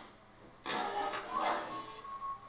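Cartoon soundtrack sound effect: a sudden hit about two-thirds of a second in, running into a noisy rush of about a second, with a brief steady tone near the end.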